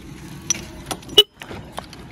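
A few light clicks and rattles of plastic and metal as the crashed Bajaj Pulsar NS125's damaged front cowl and handlebar are handled, the loudest click just past the middle.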